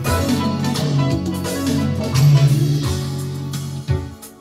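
Guitar music playing back off cassette tape through an Aiwa AD-F770 three-head deck in tape monitor, with Dolby noise reduction switched off. A sharp hit comes near the end.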